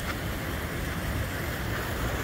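Wind buffeting the phone's microphone: a steady rushing noise with a low, fluttering rumble.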